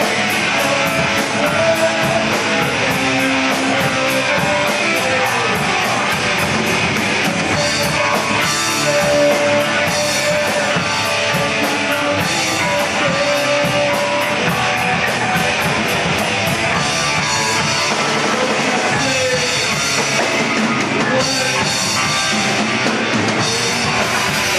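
Hardcore punk band playing live: distorted electric guitar, fast drums and shouted vocals, with an even run of cymbal hits, about three a second, through the first half.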